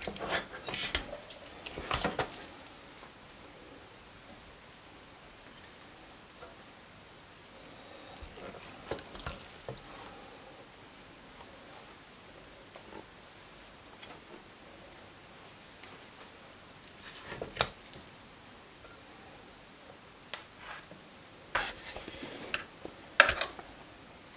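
Scattered scrapes and knocks of a wooden spoon against a stainless-steel pot and a ceramic plate as thick, stretchy cheese halva is scooped out and pushed onto the plate, with a low steady hiss between them. A cluster of utensil clinks and scrapes comes near the end.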